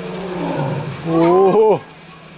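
Lioness calling: one loud call about a second in, its pitch rising and then dropping sharply as it ends.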